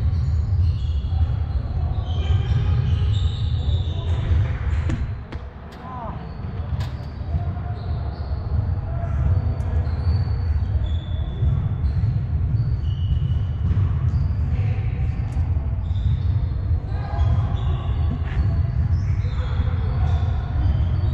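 Indoor soccer in a large echoing hall: players calling and shouting, with a few sharp thuds of the ball being kicked, over a steady low rumble.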